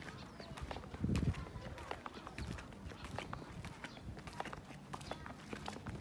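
Footsteps on concrete with scattered camera-handling clicks and taps, and a brief low rumble about a second in.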